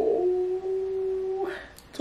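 A woman's voice holding one long, steady note for about a second and a half.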